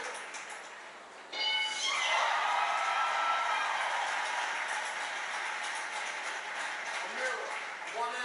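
Television game-show audio heard in the room: a bright chime a little over a second in, then a studio audience cheering and clapping.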